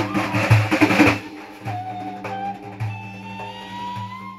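Live Persian music: a large daf frame drum played in a fast, dense roll for about the first second, then lighter strokes. Over it, a wooden end-blown flute holds a long melodic line that rises slowly near the end, above a steady low drone.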